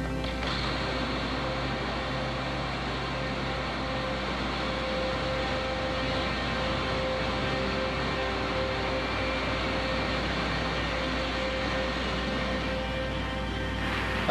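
A steady droning sound bed with hiss, a held tone and low notes that change every second or two, without any voice.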